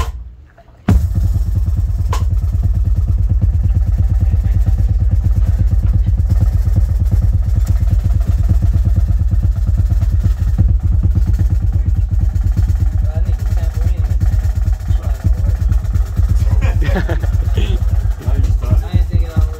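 Live band on stage: after a brief pause about a second in, a loud low buzzing drone with a fast steady pulse sets in and holds, with some wavering higher notes near the end.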